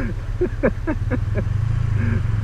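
BMW motorcycle engine running steadily under way, its note rising slightly near the end, with a man's short chuckles over it.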